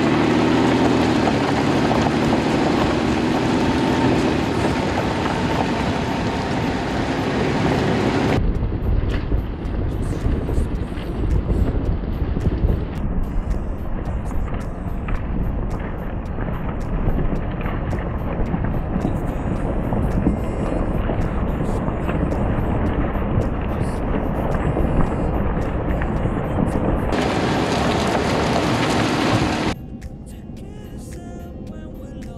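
Car driving along a gravel road, heard from a microphone mounted low on the outside of the car: tyres on gravel and wind noise over a steady low rumble. The upper hiss drops away abruptly about eight seconds in and comes back near the end.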